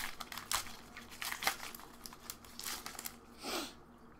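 Pokémon trading cards being handled and set down: rustling and crinkling, with scattered light clicks and a longer swish near the end.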